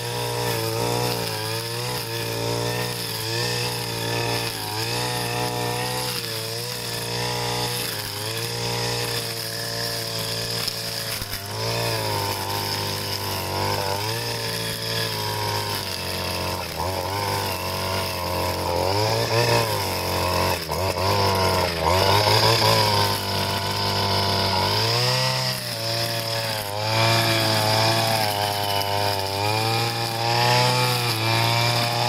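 Two-stroke brush cutter engine running at high speed while cutting grass and weeds, its pitch repeatedly dipping and rising as the cutting head meets the growth. It gets louder and higher in the second half.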